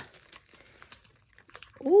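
Faint crinkling of a small plastic bag being shaken, with a few light clicks as tiny nail jewels drop into a plastic container.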